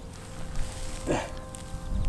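A rock being lifted out of long grass, with a low rumble of wind on the microphone and one short falling-pitched grunt about a second in.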